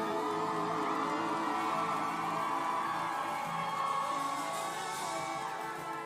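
A live band with electric guitars, fiddle and drums holds a long ringing chord to close out a song, with a few whoops from the crowd.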